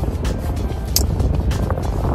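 Steady low road and engine rumble inside a moving car's cabin, with music playing underneath and a brief tick about a second in.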